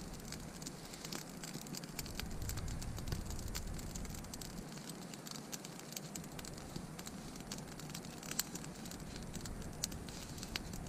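Newly lit wood campfire crackling with many sharp, irregular snaps and pops. A low rumble comes and goes beneath it.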